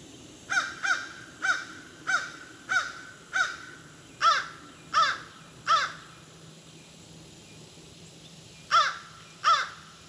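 A bird giving a run of short, harsh calls, each dropping in pitch at the end: nine in quick succession, then a pause and two more near the end.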